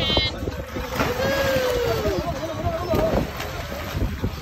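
A person jumping off a boat into the sea, with a splash about three seconds in, over steady wind rumble on the microphone. A voice gives a drawn-out call in the middle.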